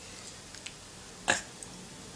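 Quiet room tone, broken once by a short, sharp sound a little over a second in.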